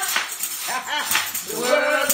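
A tambourine shaken to a steady beat of about two jingles a second, with a woman's amplified voice singing and calling out over it in gospel praise singing.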